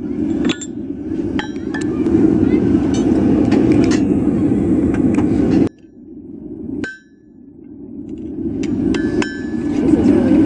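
Blacksmith's hammer striking a red-hot steel bar on an anvil: irregular single blows, each with a short high ring from the anvil, over a steady rushing noise. The rushing cuts out briefly a little past halfway and a lone ringing blow falls in the lull.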